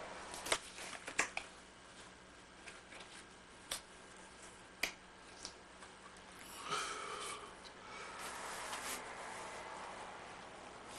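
Thin latex rubber mask being handled: a few scattered soft clicks and taps, then from about seven seconds a rubbing, squeaky rustle of rubber as it is stretched and pulled on over the head.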